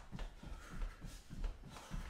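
Feet landing in quick succession on a carpeted floor while running in place doing high knees: a steady run of dull thuds, about three a second.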